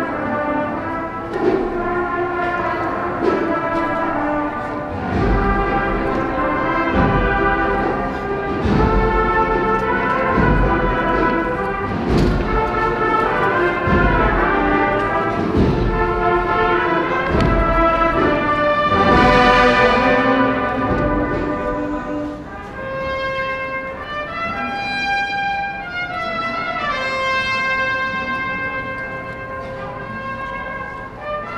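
Agrupación musical band of cornets, trumpets and trombones playing a slow processional march. Drum beats fall about every second and a half through the middle, then drop out near the end, leaving softer held brass notes.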